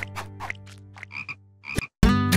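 Cartoon frogs croaking: two short croaks, one about a second in and one near the end, as the music dies away beneath them.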